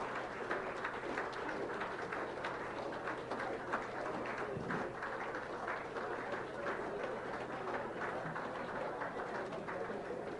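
Audience applauding: many hands clapping in a steady patter from a small seated crowd.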